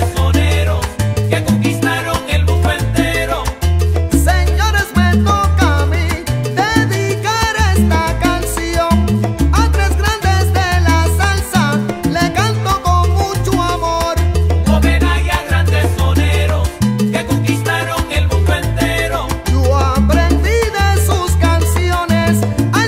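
Salsa music playing at full level, with a bass line moving in steady steps under the band.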